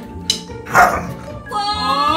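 A Siberian husky gives a short bark just under a second in, over background music, resisting being coaxed out from under the bed for a bath. A wavering, high-pitched voice-like sound starts near the end.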